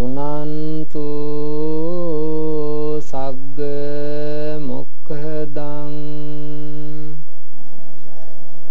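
A man chanting Buddhist Pali verses in long, drawn-out notes on a fairly steady pitch, pausing briefly about three and five seconds in and stopping near the end.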